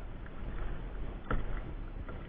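Water lapping against a kayak hull, with wind rumbling on the microphone and one sharp knock just past halfway.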